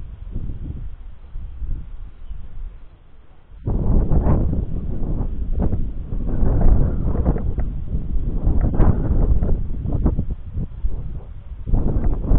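Wind buffeting the microphone in uneven gusts, much stronger from about four seconds in.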